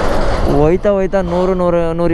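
A car-carrier truck passing close by on the highway, a rush of road noise that fades within the first half second. Then a man's voice in long, drawn-out wordless tones.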